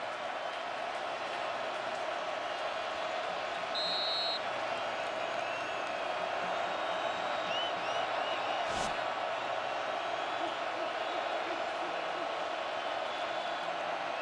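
Large stadium crowd noise, a steady roar of many voices before the snap. A brief high tone comes about four seconds in, and a single thump near nine seconds.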